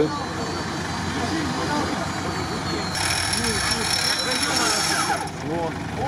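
Off-road vehicle engine idling steadily under the chatter of a crowd. A high-pitched whine joins about halfway through for a couple of seconds, then stops.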